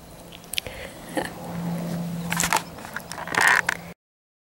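Crackling, scraping rustle of dry grass stems brushing against the camera and its microphone, with scattered clicks and louder rustles in the second half, then cut off suddenly near the end.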